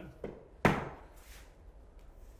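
A single hammer blow on a mudded drywall outside corner fitted with vinyl corner bead: one sharp knock a little over half a second in, echoing briefly in the bare room.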